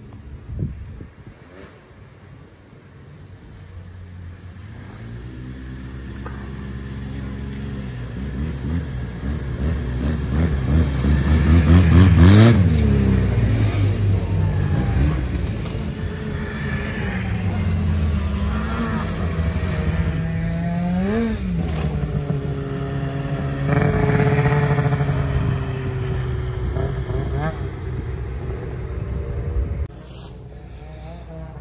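A big group of snowmobiles passing one after another on the trail. Their engines build from a few seconds in and are loudest about twelve seconds in. More sleds keep going by to the end, each engine's pitch rising and falling as it passes.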